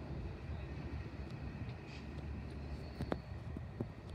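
Low, steady rumble of a Long Island Rail Road diesel train at the station, with two short sharp clicks near the end.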